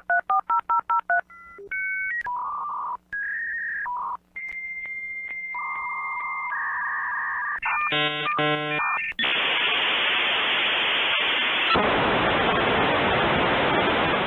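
A dial-up modem connecting over a phone line. First comes a quick run of touch-tone digits, then a string of answer and handshake tones and warbles. From about nine seconds in there is a steady loud hiss of data once the modems have trained up.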